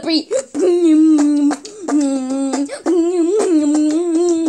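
A child's voice chanting in a sing-song beatbox routine: a string of long, held notes on a fairly steady pitch, each broken off after half a second to a second.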